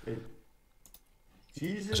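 A man's speaking voice trails off, then a near-silent pause with a few faint clicks about a second in, then his voice starts again.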